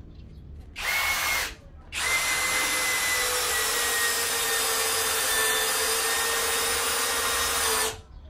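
Skil PWRCore 20V brushless drill-driver driving a 120 mm screw into wood without a pilot hole. It gives a short burst about a second in, then a steady run of about six seconds that stops as the screw seats, its whine sinking slightly under the load. It goes in easily, 'like a knife through butter'.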